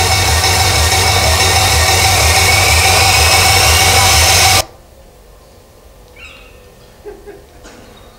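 Loud, noisy film soundtrack with a pulsing low beat and a faint rising whine, cut off suddenly a little past halfway, leaving a quiet background with a few faint bird-like chirps.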